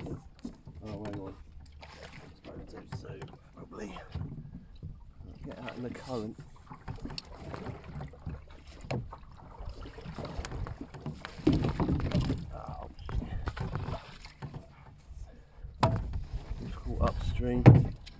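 A long dinghy sweep (oar) used as a punting pole, pushed against the bottom of a shallow channel: uneven sloshing of water around the pole and hull, with a couple of sharp knocks near the end.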